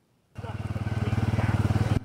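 Engine of an off-road vehicle running as it drives over rough ground, a low, evenly pulsing sound that starts about a third of a second in and grows louder.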